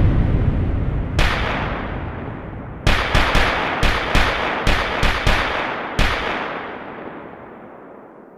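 Gunshot sound effects: a deep boom dying away, one sharp shot about a second in, then a rapid irregular volley of about ten shots between three and six seconds in, each leaving a long echoing tail that fades out.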